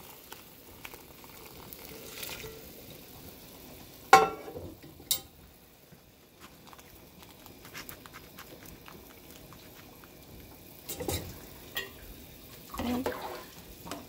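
Shrimp-shell broth being poured through a stainless mesh strainer into a pot of soup, a low splashing of liquid, with one sharp knock about four seconds in and a few softer knocks later.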